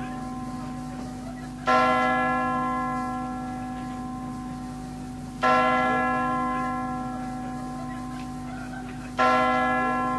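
Midnight chimes ringing in the new year: a large bell strikes three times, slowly and evenly about every four seconds, each strike ringing out with several tones and fading away before the next.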